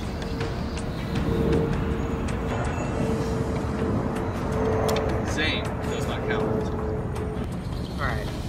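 Low steady outdoor rumble, like traffic or wind on the microphone, under a single held note of tense background music.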